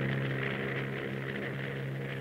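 Steady drone of propeller aircraft engines, one even pitch with overtones and a hiss over it.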